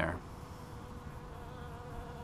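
Honey bees buzzing as they fly around the hive entrance: a steady hum with several held tones.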